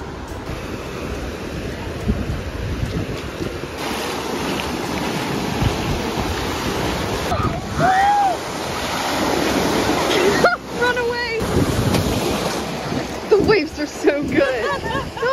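Ocean surf washing in the shallows, with wind on the microphone; the rush of water grows louder about four seconds in. Voices call out a few times in the second half.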